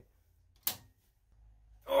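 A single brief, sharp noise about two-thirds of a second in, otherwise near silence with a faint low hum; a man's voice starts again just at the end.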